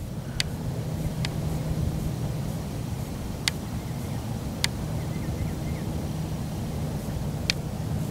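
Steady low outdoor rumble with a faint hum running through it, broken by five short, sharp ticks spread across the few seconds.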